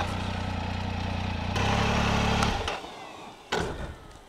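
Triumph Tiger 800XCx's three-cylinder engine idling steadily while the bike stands still. A little more than halfway through the engine cuts out abruptly, and a single sharp click follows about a second later.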